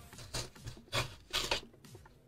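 A knife cutting through the cardboard of a packaging box in several short scraping strokes.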